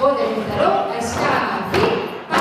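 A woman's voice over a microphone and PA calling line-dance steps, with two thuds of feet stepping on the wooden stage floor, one near the middle and one near the end.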